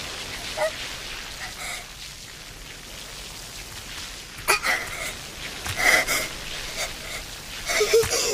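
Flames hissing and crackling, with sharp cracks that grow louder and more frequent from about four and a half seconds in.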